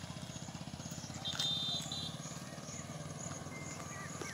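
An engine idling faintly with a steady low pulsing, and a short high-pitched tone about a second and a half in.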